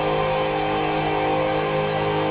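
Live hard-rock band playing, with distorted electric guitar chords held and ringing steadily.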